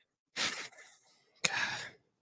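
A man's heavy sighing exhale, followed about a second later by a second short, sharp breath out.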